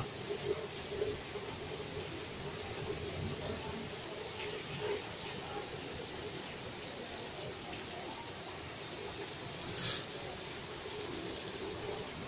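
Heavy rain pouring onto pavement, roofs and parked cars as a steady hiss, with a brief louder burst of hiss about ten seconds in.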